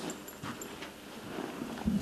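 Quiet room tone with a few faint clicks and a brief low thump near the end.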